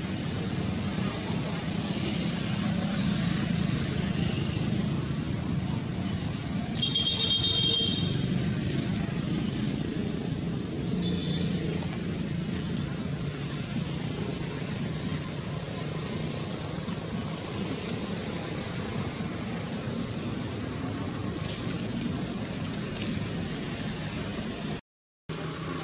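Steady low outdoor rumble, with a brief high-pitched call about seven seconds in and a shorter one about eleven seconds in.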